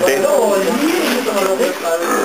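Speech only: a man's voice ending a sentence, then more talking that the transcript did not catch.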